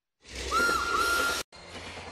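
Short broadcast transition sting: a burst of hiss carrying a whistle-like tone that dips and rises back twice, starting about a third of a second in and cutting off abruptly after about a second.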